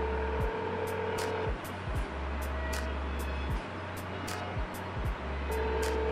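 Telephone ringback tone from a smartphone on speakerphone: an outgoing call ringing and not yet answered. It rings for about a second and a half, then rings again near the end, over background music with a steady beat.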